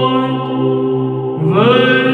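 Solo male voice singing Byzantine chant in the third tone through a microphone, over a steady low drone. He holds a long note, then glides up to a higher one about one and a half seconds in.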